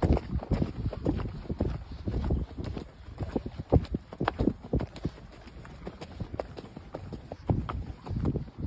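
Hoofbeats of a ridden horse moving fast over dirt, a quick run of strikes about three a second. Wind buffets the microphone, mostly in the first couple of seconds.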